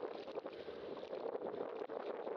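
Steady rushing noise of wind on the microphone of a bicycle-mounted camera, with scattered small knocks and rattles as the bike rolls over a bumpy dirt path.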